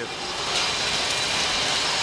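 A steady hissing rush of air or machine noise, even throughout.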